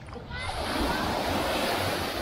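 Small waves breaking on a sandy shore and washing up the beach, the hiss of the surf swelling about half a second in and holding steady. Wind rumbles on the microphone underneath.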